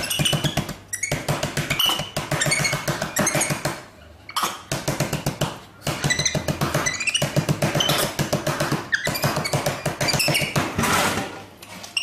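Bursts of rapid clicking and tapping, each a second or two long with short pauses between, as a capuchin monkey works the plastic selection buttons of a drink vending machine; high squeaky chirps run over the clicking.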